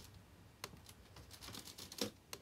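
Faint clicking from a MacBook Air's keyboard as the DVD menu is stepped through: a few separate clicks, then a quick run of clicks in the second half.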